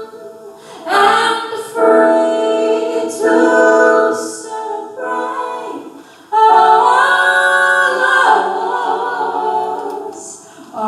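Female jazz vocalist singing long held phrases over sustained chords, with no drums. The sound drops away briefly in the first second and again just before the middle, then comes back louder.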